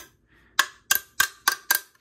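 Hard plastic of a Transformers Coronation Starscream throne tapped five times in quick succession with a small hand-held piece, about three taps a second. Each tap gives a sharp click with a short ring, the sign of solid, hard plastic rather than the soft, dull-thudding kind.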